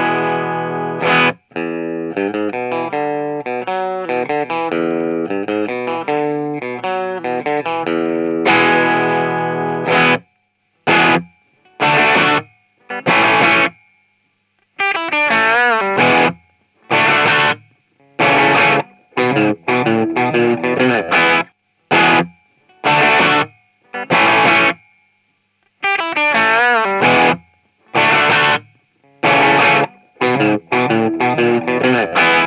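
Distorted electric guitar played through a Peavey 6505MH all-tube amp head with its output valves biased hot, at the factory setting of about 28 milliamps. It plays a continuous riff for about ten seconds, then short stabbed chords separated by silences, with a faint high whine in the gaps.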